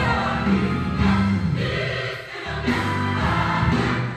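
Gospel song with a choir singing over a steady bass line, played through a small speaker in the room.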